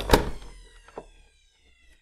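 Centrifugal juicer switched off with a sharp click, its motor and spinning basket winding down with a whine that falls in pitch and fades out within about a second and a half. A lighter knock follows about a second in.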